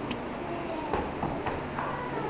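A few short thumps and taps from two children sparring in padded foot gear and gloves on foam mats, over steady room noise.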